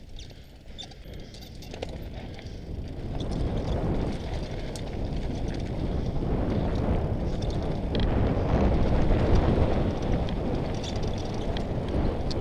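Mountain bike descending a loose gravel and rock trail: tyres crunching over stones and the bike rattling, under heavy wind rush on the bike-mounted camera's microphone. The noise swells about three seconds in as the bike gathers speed and stays loud.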